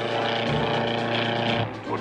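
Steady drone of an early flying machine's piston engine in flight, mixed with film music. It drops away just before two seconds in.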